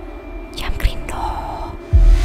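A man's breathy whispering or sighing, two short breaths about half a second in, then a low thud just before the end.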